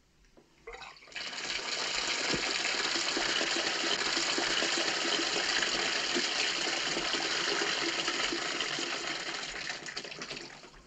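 Water running from a bathtub's mixer tap into the tub: it starts about a second in as a steady gush and tapers off near the end.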